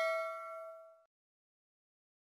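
Notification-bell chime of a subscribe-button animation, a ding of several steady tones ringing out and fading away about a second in.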